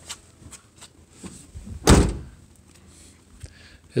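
The door of a 1998 Ford F-150 standard-cab pickup slammed shut once, about two seconds in, with a few faint clicks of handling before it.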